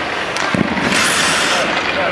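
Ice hockey rink sounds: skate blades scraping across the ice with sharp clacks of stick and puck, and a louder hissing scrape of skates about a second in.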